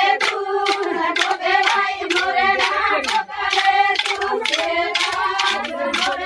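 A group of Banjara women singing a Holi folk song together, with steady rhythmic hand-clapping at about two to three claps a second.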